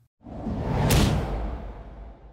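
Whoosh transition sound effect: a rushing noise swells up, with a sharp hit near its peak about a second in, then dies away slowly.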